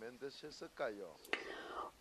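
Faint speech: a voice talking quietly at a low level, with a short click about a second and a half in.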